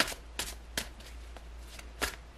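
A tarot deck being shuffled by hand, the cards snapping together in short sharp strokes about two a second.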